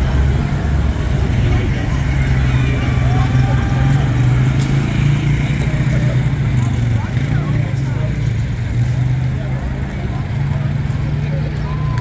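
Engines of slow-moving police vehicles running as they pass: a motorcycle, then a quad ATV, then an SUV. A steady low rumble lies under crowd chatter.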